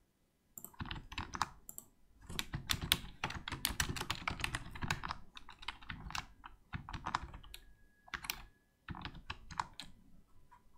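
Typing on a computer keyboard: fast runs of keystroke clicks starting about half a second in, with short pauses about two seconds in and near the end.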